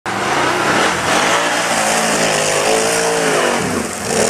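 ATV engine revving hard under load as it churns through deep mud. Its pitch rises around the middle and drops away near the end.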